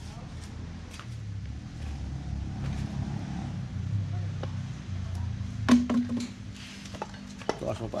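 Metal parts of a vacuum brake booster being handled: one loud, sharp metallic clank about two-thirds of the way in, then lighter clicks and clinks. A low rumble runs underneath.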